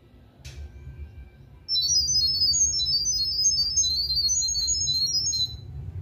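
Smartphone speaker playing the NEYE3C app's sound-wave pairing signal, which passes the Wi-Fi details to a light-bulb Wi-Fi camera. It is a loud, rapid string of short high beeps that hop between pitches, starting about two seconds in and lasting about four seconds. A single click comes just before.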